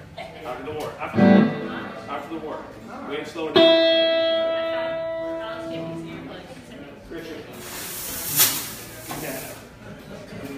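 Electric guitar between songs: a thump about a second in, then a single plucked note that rings out and fades over a couple of seconds. Near the end comes a brief hiss.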